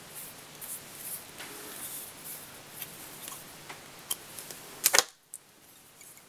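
Small clicks and soft rustles of hands handling arctic fox hair and fly-tying tools at the vise, with a sharp double click about five seconds in.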